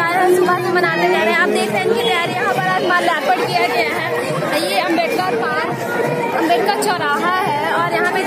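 Speech: a woman talking over the chatter of a crowd.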